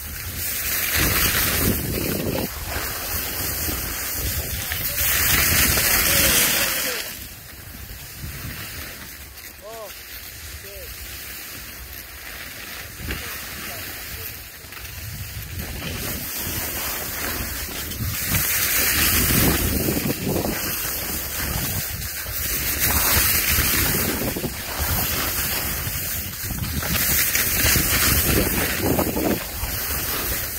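Skis scraping and hissing over packed snow, swelling with each turn every few seconds and easing off in a quieter glide partway through, with wind rushing over the microphone.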